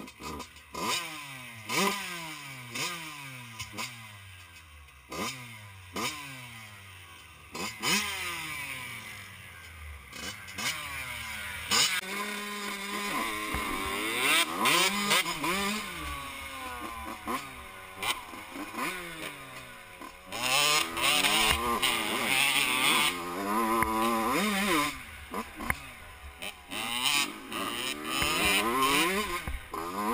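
Yamaha YZ85 two-stroke dirt bike engine, first blipped on the throttle roughly once a second, each rev falling away again, then ridden with the revs rising and falling through the gears and hardest on the throttle a little past the middle.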